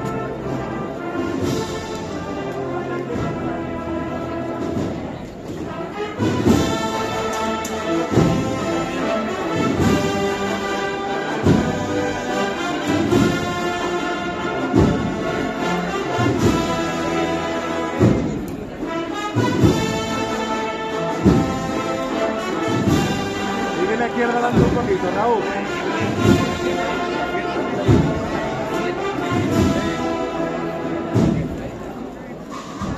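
A procession band of cornets, brass and drums playing a march. About six seconds in, a heavy drum beat comes in and keeps a steady pulse.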